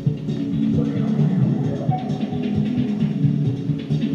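Electronic music played live on hardware: a drum-machine beat with low pitched bass and synth notes.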